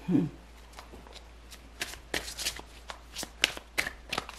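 A tarot deck being shuffled by hand: irregular quick card snaps and flicks, sparse at first and getting busier about two seconds in.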